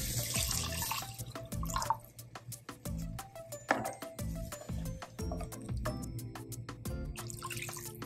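Water pouring from a glass measuring cup into hot curry sauce in a cast-iron pan, stopping about a second in, with background music playing throughout.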